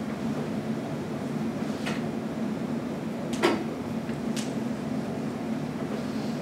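Steady hum of room ventilation or equipment fans, with three short clicks or knocks, the loudest about three and a half seconds in.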